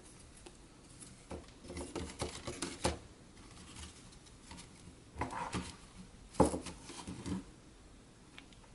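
Faint handling sounds of a small model kit's thin lattice tower pieces being worked by hand: scattered light taps, clicks and rubs, with a short cluster of sharper knocks about six and a half seconds in.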